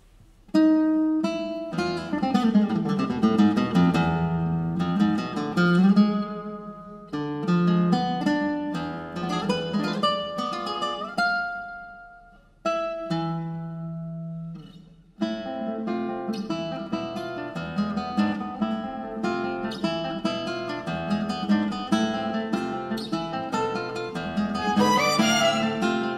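Nylon-string classical guitar playing a solo concerto passage, starting about half a second in. Plucked notes and chords ring out and fade, with a few short pauses, then give way to busier, continuous playing in the second half.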